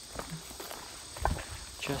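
Footsteps of people walking on a forest dirt path strewn with leaf litter: a few irregular, soft crunching steps, the firmest about a second in, with a voice starting just before the end.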